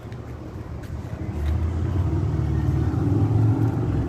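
Low rumble of a motor vehicle's engine, growing louder from about a second in.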